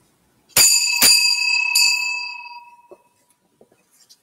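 Sacristy bell struck three times in quick succession, its clear ringing fading away over about two seconds: the signal that the priest is entering to begin Mass.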